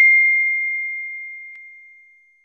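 A single bell-like ding sound effect: struck just before, it rings on as one clear high tone that fades away steadily over about two seconds.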